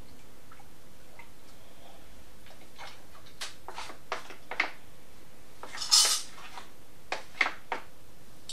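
A stick knocking and scraping against a plastic jug of indigo dye vat as cloth is worked in the liquid. It makes a string of short knocks and clinks in the second half, with one louder, longer clatter about six seconds in.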